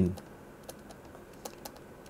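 Faint, irregular taps and clicks of a stylus writing on a tablet screen, a few per second over a low hiss.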